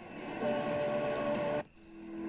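Eton Elite Field radio stepping through the AM medium-wave band. A station at 1430 kHz comes in noisy, with a steady tone, then the audio cuts out for a moment near the end as the radio retunes to 1440 kHz and the next signal comes in.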